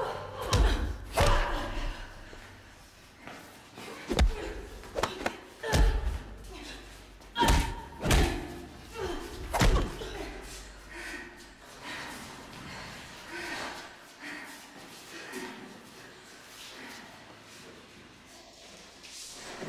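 Punches and body blows landing in a fist fight: a series of sharp thuds, most of them in the first ten seconds, with voices grunting and shouting between them. The blows thin out later and the voices carry on.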